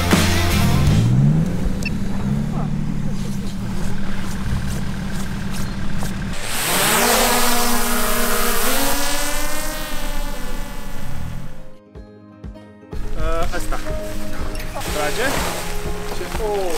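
A stuck SUV's engine running and briefly revving while the vehicle is pushed through snow. Then a small camera drone's propellers spin up with a rising whine and hiss. Voices come in near the end.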